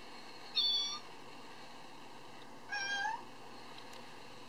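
Two meows: a short high one about half a second in, and a longer one near the three-second mark that rises slightly in pitch at its end.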